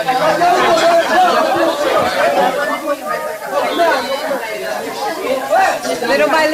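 Several people talking over one another in indistinct chatter, with no single voice standing out.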